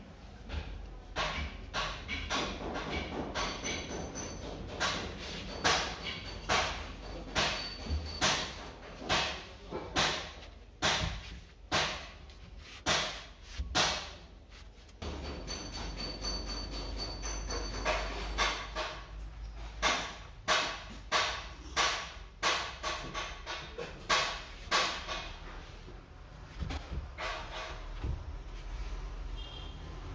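Repeated hammer blows on metal, roughly one every second or less, some with a short metallic ring; a steady low rumble comes in about halfway.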